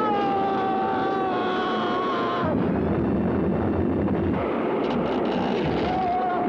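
Film soundtrack: a man's long, held scream as he is hurled through the air, lasting about two and a half seconds and sagging slightly in pitch. It is followed by a steady rushing, wind-like noise, and another held high tone begins at the very end.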